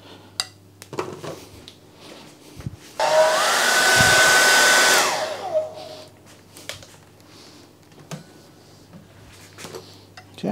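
A hair dryer switched on about three seconds in for roughly two seconds to speed-dry the wet watercolour paint: a loud rush of air with a motor whine that climbs as it spins up, then winds down when it is switched off. A few faint knocks come before and after it.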